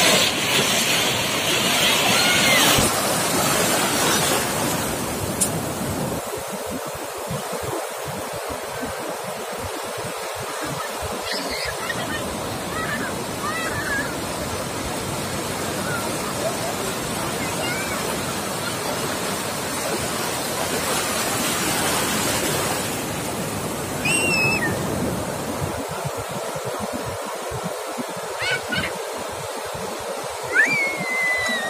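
Ocean surf breaking and washing through shallow water, a steady rush that swells a little louder in the first few seconds and again later on.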